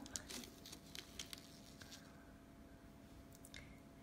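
Faint, scattered crinkles and clicks of parchment paper as a set white-chocolate and sprinkles topper is carefully peeled off it.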